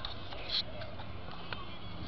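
Outdoor background at a BMX track: faint distant voices over a steady low rumble, with a brief hiss about half a second in.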